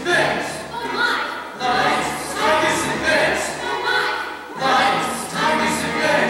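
Several voices singing together in short, repeated phrases over musical accompaniment.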